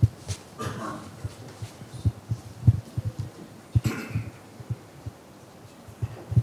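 Microphone handling noise: a string of soft, irregular low thumps with two brief rustles, about a second in and near four seconds, as a handheld microphone is picked up and passed to the next questioner.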